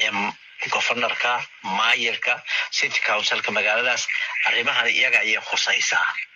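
Speech: a man talking in short phrases with brief pauses.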